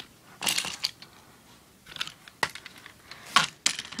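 Toy trains and plastic track being handled by hand: a short scraping rustle about half a second in, then a few scattered light clicks and knocks, the sharpest near the end.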